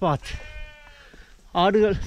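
A man's voice talking. In a short pause about half a second in, a faint, steady high tone is heard briefly.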